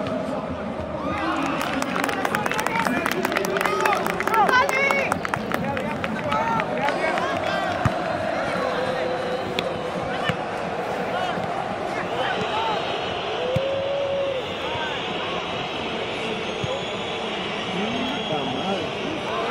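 Spectators on the sideline of a youth soccer match shouting and clapping for a few seconds, loudest about four seconds in, then scattered voices calling across the field.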